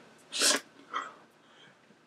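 A man's short, sharp breathy exhale about half a second in, followed by a softer brief vocal sound about a second in.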